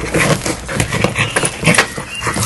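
Two Australian shepherds tussling over a rubber Jolly Ball on paving tiles: a quick, irregular run of scuffs, knocks and short grunts, about four or five a second.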